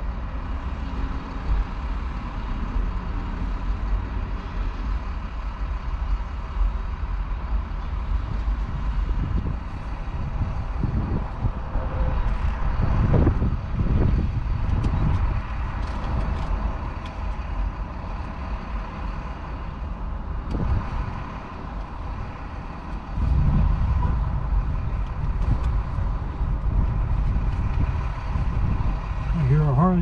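Vehicle engine idling, heard from inside the cab: a steady low rumble that swells in the middle and steps up louder about 23 seconds in.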